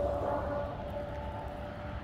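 Low background rumble with a faint steady hum running through it.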